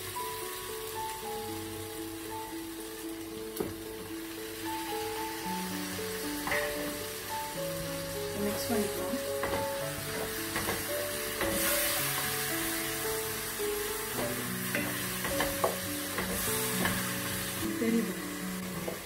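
Onion-and-spice masala sizzling in a frying pan as a wooden spoon stirs and scrapes through it, with mashed tomato being stirred in. Soft background music of slow held notes plays under the frying.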